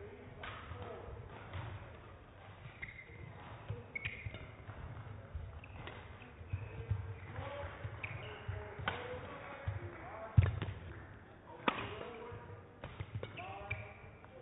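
Badminton rally: the shuttlecock is struck back and forth by racquets, with players' shoes stamping and squeaking on the court. The two sharpest strikes come about ten and a half and nearly twelve seconds in.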